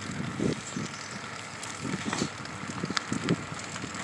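Bicycle rolling fast on rough asphalt: a steady rush of tyre and wind noise with irregular knocks and rattles from the bike.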